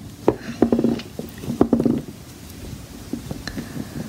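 Handling noise from fingers working a crocheted yarn shoe strap over its button: soft rubbing and a string of small clicks in the first two seconds, then quieter with a few faint ticks.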